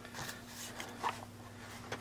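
Faint handling noises of a plastic servo mount and its wires being moved in the hand: light rustles and small clicks, with a slightly louder tap about a second in, over a faint steady low hum.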